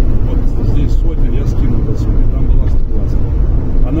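Steady road and engine rumble heard inside a car's cabin while it cruises at highway speed.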